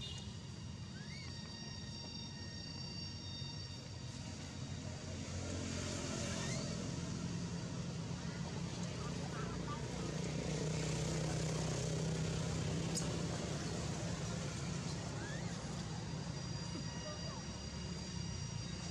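Low, steady motor hum of a vehicle that grows louder about five seconds in. Steady high insect tones sound over it in the first few seconds and again near the end.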